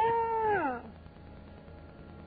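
A man's voice holds a long, high drawn-out vowel that slides down in pitch and stops just under a second in. After it there is only a faint steady hum.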